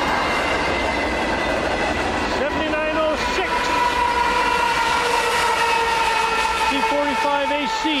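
Union Pacific double-stack freight train passing at low speed, with its rear distributed-power diesel locomotive rolling by close. The wheels on the rails give a steady rumble and clatter. From a few seconds in, steady high ringing tones sound over it.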